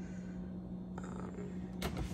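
Steady low hum of a refrigerator running with its door open. There is a faint click about a second in and a sharp click near the end as the door is handled.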